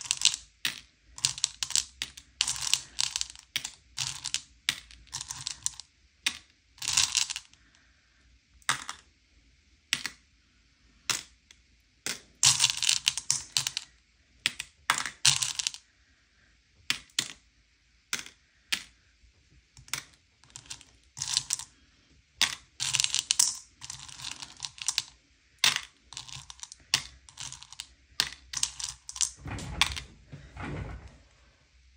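Candy-coated M&M's chocolates clicking and clattering against one another as a hand rummages through them in a bowl and picks pieces out. The clicks come in irregular quick bursts with short pauses between.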